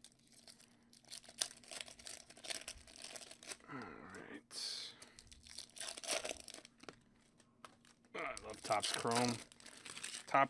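Foil wrapper of a Topps Chrome football card pack being torn open and crinkled by hand: a run of sharp crackles and rustles.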